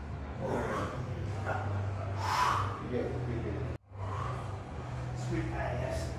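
Indistinct voices and room noise over a steady low hum, with the sound cutting out briefly about four seconds in.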